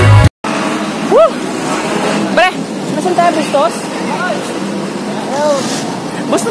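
Music cuts off right at the start. After a brief gap comes steady street traffic noise with a man's voice making several excited wordless exclamations that rise and fall in pitch.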